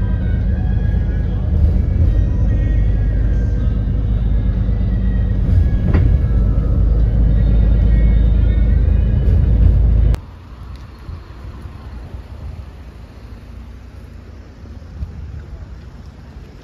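Loud, steady low rumble inside a moving city bus. It cuts off abruptly about ten seconds in, leaving a much quieter background.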